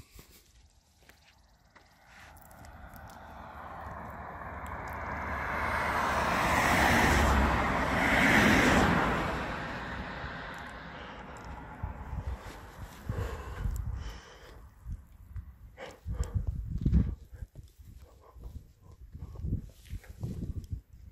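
A vehicle driving past on the road: its tyre and engine noise swells over several seconds, peaks, and fades away. Then come irregular footsteps on gravel.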